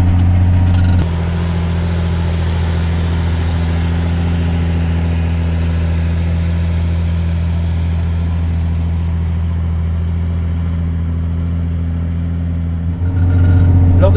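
Massey Ferguson 8470 tractor's six-cylinder diesel engine running steadily under heavy load while pulling an eight-body plough, held at raised revs of about 1800 rpm. It is heard from inside the cab for about a second, then from outside the tractor, and from inside the cab again near the end.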